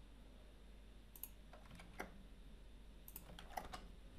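Faint typing on a computer keyboard: a few keystrokes about a second in, then a quick run of keystrokes near the end.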